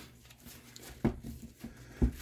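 Quiet handling of a padded nylon two-point sling: webbing rustling and a few soft taps from its metal HK hooks, which are muffled by elastic silencers.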